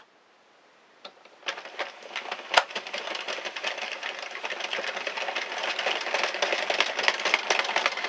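Addi 46-needle circular knitting machine being hand-cranked: the plastic needles run through the cam track with a rapid clicking clatter. It starts about a second and a half in and grows louder and busier as the cranking gets going.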